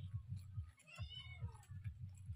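A cat meowing once, a short call that rises and falls in pitch, about a second in.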